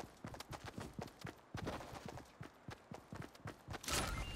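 Shopping cart clattering, with a quick, uneven run of knocks and rattles several times a second.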